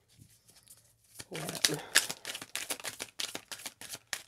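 A deck of tarot cards being shuffled by hand: a quick, irregular run of crisp card-on-card clicks and flutters starting about a second in.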